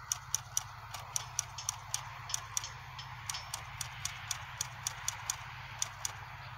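A quick run of sharp, short clicks or taps, about four a second and slightly uneven, over a steady low hum.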